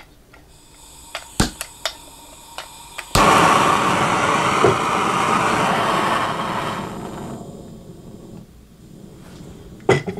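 Handheld gas torch with a trigger igniter: a few sharp clicks, then it lights with a sudden steady hiss of gas and flame that holds for about four seconds and fades away.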